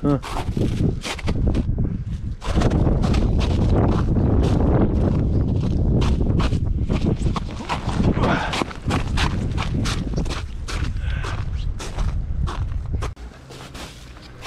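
Footsteps crunching on snow-covered sea ice, a few steps a second, with wind rumbling on the microphone from a couple of seconds in until it drops away near the end.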